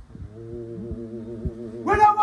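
Singing: voices hold long, wavering notes that swell louder near the end, over a few low thumps.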